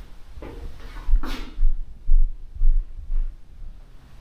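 Dull, very low thuds about twice a second: footsteps of someone walking with a handheld camera, picked up through the camera body.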